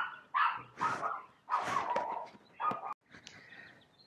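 A dog barking faintly, about five short barks in the first three seconds.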